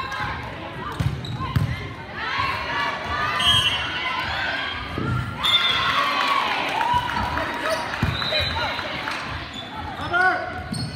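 Indoor volleyball game sounds in a large echoing gym: players' voices and calls, with dull thumps of the volleyball being bounced and played.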